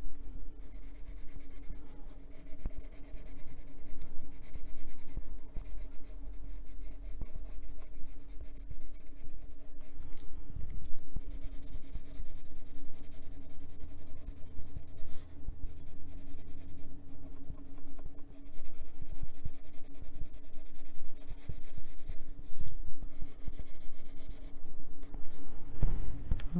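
A Faber-Castell Polychromos coloured pencil scratching on paper in quick repeated shading strokes, with a steady low hum beneath.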